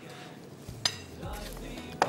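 A single sharp clink of kitchenware, a dish or utensil knocking, a little under a second in, with a short ringing tail, amid soft handling sounds at the counter.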